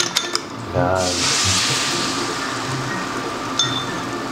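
A fork clicks rapidly against a ceramic bowl as eggs are beaten. About a second in, the beaten eggs hit the hot frying pan and sizzle, the sizzle slowly easing, with a light clink near the end.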